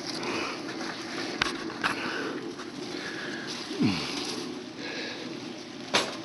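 Fig leaves and branches rustling as the camera is pushed through the foliage, in soft intermittent brushes with a couple of light clicks. About four seconds in there is one short low sound that falls in pitch.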